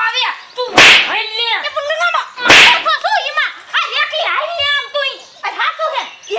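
Two loud slaps, about a second in and again about two and a half seconds in, amid women's excited speech.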